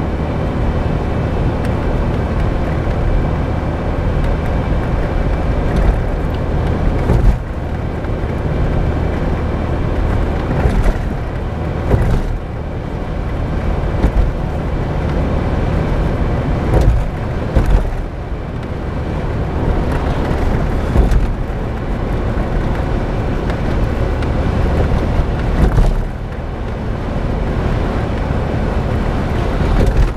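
Daihatsu Copen's 660 cc four-cylinder intercooled turbo engine and road noise heard from inside the cabin while driving, steady throughout. Several short sharp knocks or creaks cut in now and then, and the engine note drops away briefly a few times.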